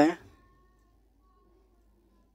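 A man's voice trailing off at the end of a word with a falling pitch, then near silence: room tone.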